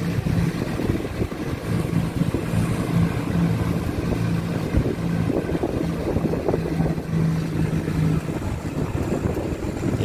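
Motor scooter's engine running at low riding speed, a steady low hum that drops away briefly now and then, over road and wind noise.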